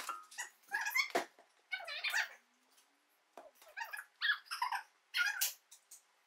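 Corgi whining and yipping in a string of short, high calls with short gaps between them.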